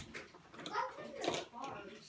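Quiet, indistinct voices, with a few short rustling sounds.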